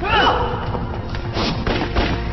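Action film soundtrack: a brief spoken line, then a thud about a second and a half in and another near the end as a fight begins, over background music.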